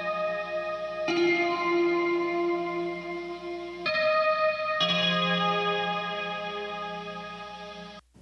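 Clean electric guitar chords with a 12-string guitar part, played back from a mix. Each chord rings on until the next is struck, about a second in, near four seconds and again near five, and the last fades away toward the end.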